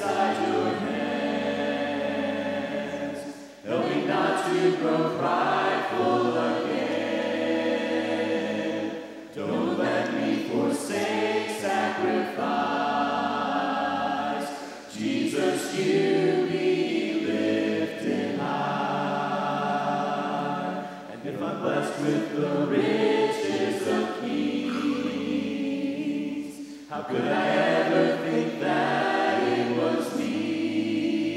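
Mixed group of voices singing a worship hymn a cappella in harmony, in phrases of about six seconds with brief breaths between.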